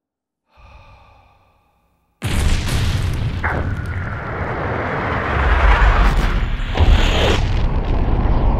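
Cinematic explosion sound effect for the creation of the universe: a faint steady tone fades in and out, then about two seconds in a sudden loud blast breaks into a rushing rumble that keeps going and swells again near the end.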